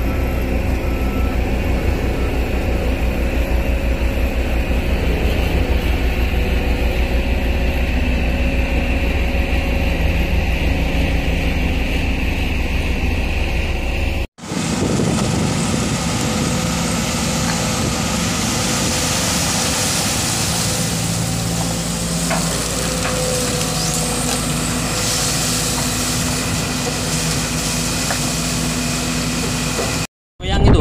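Heavy diesel engines of a hydraulic excavator and a dump truck running steadily while the excavator loads the truck. About halfway there is an abrupt cut to another machine recording, with a steady engine and more hiss.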